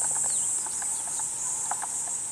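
A steady, high-pitched insect chorus, with a few faint short taps mixed in.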